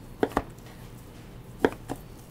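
Chef's knife slicing through raw beef and knocking on a plastic cutting board: four sharp knocks in two quick pairs, one pair about a quarter second in and the other near the end.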